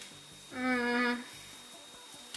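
A person humming one steady, unchanging note for under a second, starting about half a second in.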